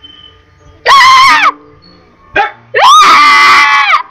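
Two loud, high-pitched playful shrieks from a young voice: a short one about a second in, then a longer one that rises and holds before cutting off at the end.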